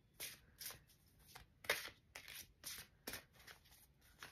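A deck of tarot cards being handled: a string of faint, irregular snaps and rustles of card stock as cards are shuffled and drawn.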